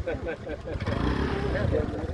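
Men's voices talking over a small motorcycle engine running, the engine louder in the second half.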